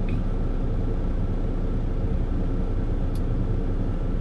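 Steady low rumble of an idling truck engine heard inside the sleeper cab, with one faint tick about three seconds in.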